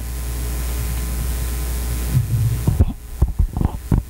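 Steady electrical hum with hiss from the sound system, which cuts out after nearly three seconds, followed by a few soft low thumps.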